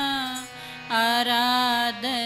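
A woman singing Gurbani kirtan, her voice gliding between notes over a steady harmonium. She breaks off about half a second in and comes back in at a higher pitch a moment later.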